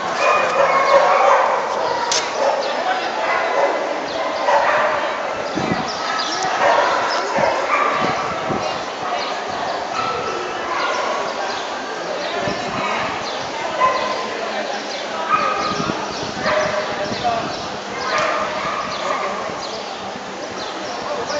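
Dogs barking and yipping now and then over continuous crowd chatter.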